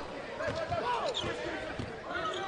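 Basketball being dribbled on a hardwood arena court, a few bounces, with faint voices from the court and crowd behind.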